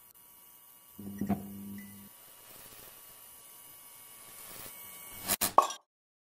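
Outro sound effects: faint steady electronic tones, a short steady buzz about a second in, then three or four sharp clicks near the end.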